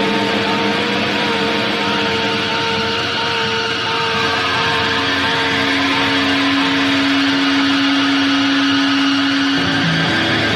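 Rock band recording: distorted electric guitars holding sustained notes over a dense, noisy wash, with the held notes shifting about four seconds in and again near the end.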